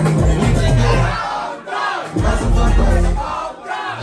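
Loud dance music playing over club speakers, with a crowd of voices shouting and singing along. The bass drops out briefly about a second in and again near the end, leaving the voices more exposed.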